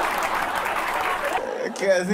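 Audience applauding, a dense, even clapping that fades under a man's voice near the end.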